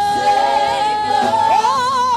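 Female gospel singers singing into microphones. A high note is held for over a second, then rises into a run with vibrato.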